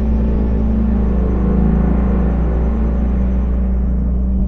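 Dark, droning horror-style film score: a steady, deep low rumble under sustained tones, with a hissing upper layer that fades away near the end.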